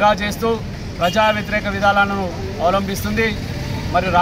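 A man speaking forcefully in Telugu, addressing the camera, over a steady low hum.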